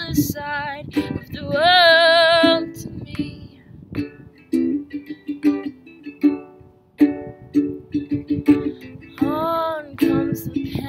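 Ukulele strummed in a steady rhythm through an instrumental break. A woman's voice sings a wordless held note with vibrato about a second and a half in, and another short note near the end.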